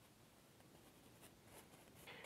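Near silence, with faint scratching of a filbert bristle brush dabbing oil paint onto canvas.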